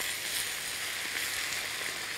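Swiss chard leaves and diced chicken with onion sizzling in two frying pans on the stove, a steady hiss.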